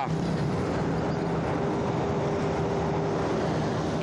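Highway traffic: vehicles passing at speed close by, a steady rush of tyre and engine noise with a low hum running underneath.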